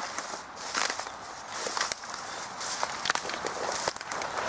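Footsteps crunching through dry, dead grass and brush, at a steady walking pace of about one step a second, with crackles and rustling of stems.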